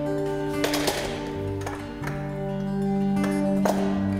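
Instrumental duet on two acoustic guitars, one full-size and one small-bodied, picking sustained melody and bass notes, with a few sharp strummed accents about a second in and again near the end.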